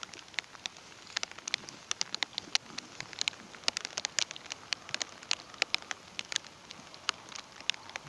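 Rain falling: a steady faint hiss with many sharp, irregular ticks of drops striking close by, several a second.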